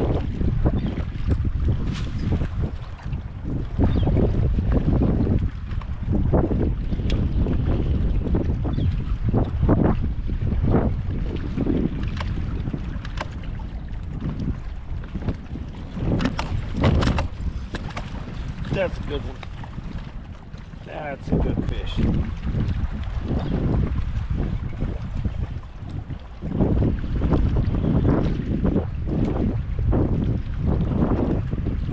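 Strong wind buffeting the microphone, rising and falling in gusts, with choppy water slapping against a kayak's hull in short splashes.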